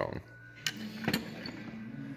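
Two light clicks about half a second apart, from small metal parts being handled, over a faint steady low hum.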